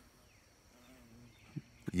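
A quiet pause with faint outdoor background, a weak brief hum about a second in, and a small mouth click or breath near the end.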